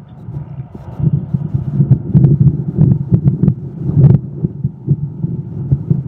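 Wind buffeting the microphone: a loud, uneven low rumble with irregular thumps, growing louder about a second in.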